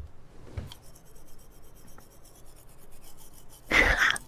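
Faint rapid scrubbing of a toothbrush on teeth, steady and rasping, followed near the end by a brief loud burst.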